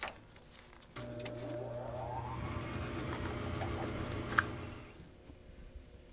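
Water running from a water heater's drain valve into a glass sample bottle, starting suddenly about a second in. It goes on for about four seconds with a rising tone as the bottle fills, then tapers off.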